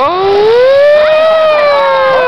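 Spectators whooping and cheering: one loud, drawn-out "woo" that rises in pitch at the start and then slowly falls, with other voices overlapping at different pitches.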